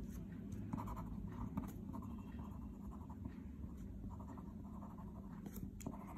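A pen writing on paper: faint, irregular scratching strokes as words are written out.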